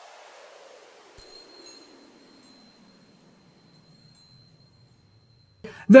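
Logo sting sound effect: a faint falling whoosh fades away while, from about a second in, high shimmering chime tones ring with a few sparkling tinkles.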